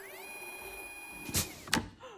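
Electronic sound effect of a wall-mounted instant-cupcake machine: a whirring tone sweeps up and holds steady for over a second, then two sharp clicks follow near the end.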